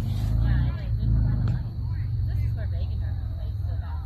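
Outdoor field ambience: a loud low rumble, strongest in the first second and a half, under faint distant voices of players calling.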